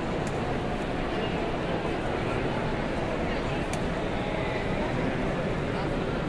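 Steady crowd babble: many indistinct voices talking at once, none clear enough to make out words.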